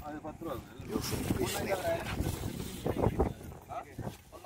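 People talking, with wind rumbling on the microphone.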